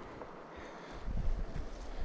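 Faint, even outdoor hiss, then from about a second in an irregular low rumble of wind buffeting the microphone.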